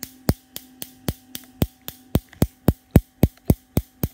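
Radio receiver putting out a steady train of sharp clicks, about four a second and uneven in strength, over a faint steady hum, with a test lead from the detector and meter clipped to its antenna.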